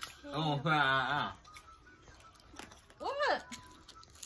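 A person's voice: one drawn-out vocal note with a wavering pitch, about a second long, near the start, then a short spoken word near the end.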